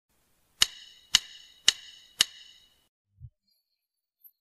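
Four evenly spaced percussive clicks, about two a second, each with a short bright metallic ring: a drummer's count-in ahead of a heavy metal song. A soft low thump follows near the end.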